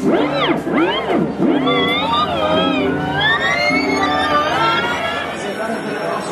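Recorded music or singing played from a record on a turntable, its pitch swooping sharply up and down for the first second or so and then wavering and wobbling, as the record's speed changes.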